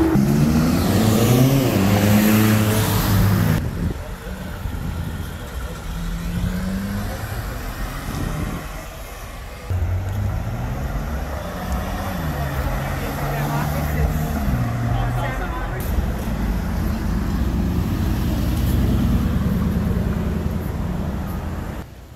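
Sports car engines accelerating through a city intersection, the revs climbing and stepping back down between gear changes. There is a sudden break a few seconds in. A Ferrari California's V8 pulls away around the middle.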